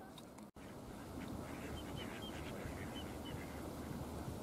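A water bird calling in a run of short, high notes, starting about a second in, over steady low background noise.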